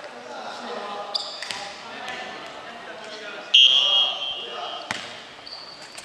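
Futsal ball knocking on a wooden gym floor a few times, with players' voices echoing in the hall and a short high-pitched squeal, the loudest sound, about three and a half seconds in.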